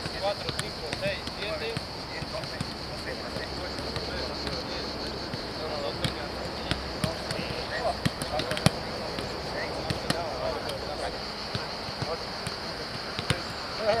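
Footballs being kicked and passed on a grass training pitch: sharp thuds at irregular intervals, the loudest about two-thirds of the way through, with distant player voices in the background.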